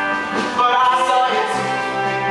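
A live band plays an instrumental passage of held chords over a sustained bass note, heard from the audience.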